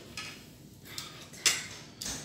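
A few light clicks of spoon and fork against dinner plates, the sharpest about one and a half seconds in.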